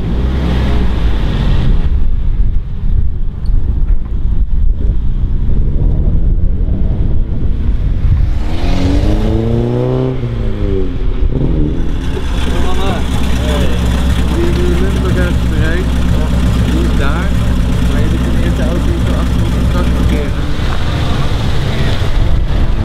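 Classic car engines running: a steady low engine drone, then about nine seconds in a car passing with its engine pitch rising and falling. From about twelve seconds a car engine runs steadily at low revs.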